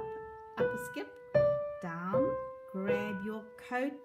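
Grand piano played one note at a time with the right hand: a slow melody of held notes stepping upward, a new note roughly every second or less, with a voice speaking along over the playing. It is a slow demonstration of the melody for a pupil to copy.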